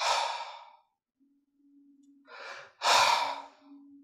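A man breathing out audibly three times in breathy 'haa' sighs: a strong one at the start, a softer one a little past two seconds, and a strong one just before three seconds. The breaths voice the breathy Arabic letter ḥā (ح) he has just asked about.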